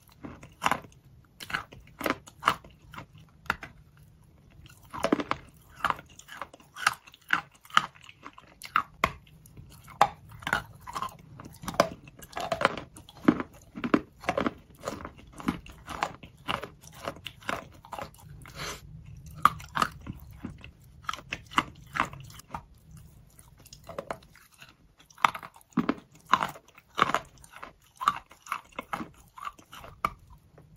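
Close-miked biting and chewing of a coated block of chalk: sharp, irregular crunches several times a second, with a couple of short lulls.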